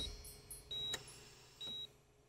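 Patient heart monitor beeping steadily in an operating room: a short, high single-tone beep a little under once a second.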